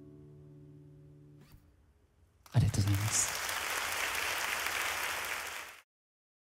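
An acoustic guitar's last chord rings out and fades, cut off by a soft click about a second and a half in. About a second later a crowd starts applauding, loudest at its onset, and the sound stops abruptly just before the end.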